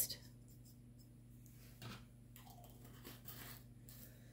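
Near silence: faint room tone with a low steady hum and a couple of faint, brief handling noises.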